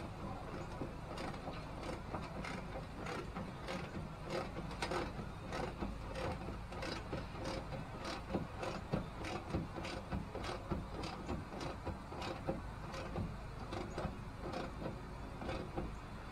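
Ratcheting wrench clicking in quick, uneven runs as a quarter-inch bolt and nylock nut are tightened.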